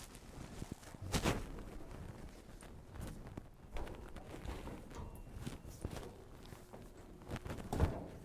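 A man clambering up out of a tight opening among pipes and steel, his shoes and hands knocking and scuffing against the metal and his clothes rubbing. The loudest knock comes about a second in, with lighter ones scattered after it.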